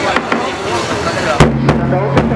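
Crowd chatter, then about 1.4 seconds in two sharp drum hits a quarter-second apart. The first leaves a low ringing boom, in the way of a large festival drum struck to accompany a traditional wrestling bout.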